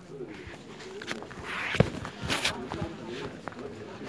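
Indistinct voices of people talking in a busy waiting room, with footsteps; a sharp knock about two seconds in is the loudest sound, followed by a brief rustle.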